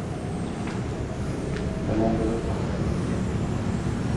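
A steady low rumble, with a faint murmured voice about halfway through and a faint tick or two.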